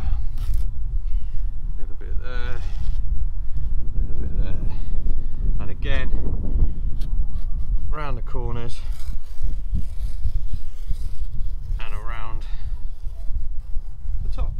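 Steady low rumble of wind on the microphone, with short snatches of a person's voice about two, six, eight and twelve seconds in.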